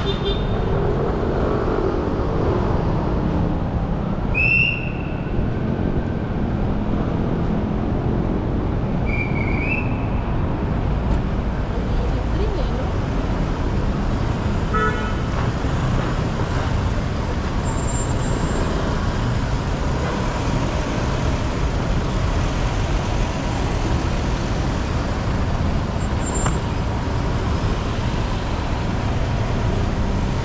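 Steady city street traffic noise from passing cars and motorcycles, with a couple of short, high toots or chirps about five and ten seconds in.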